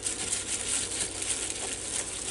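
Crinkling and rustling of a thin plastic food-prep glove as a hand presses and turns a pork chop in a plate of buttermilk, an irregular crackly noise that goes on throughout.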